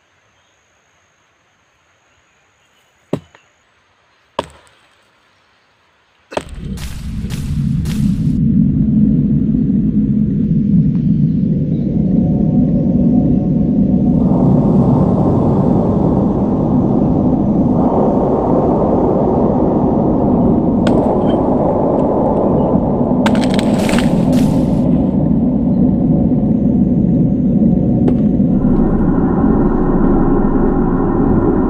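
Two sharp knocks in a quiet stretch, then a loud, low rumbling drone cuts in about six seconds in and holds, with higher sustained tones stacking on top of it several times: an ominous horror-film score.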